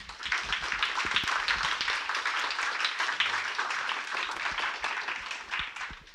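Audience applause, beginning at once and dying away near the end.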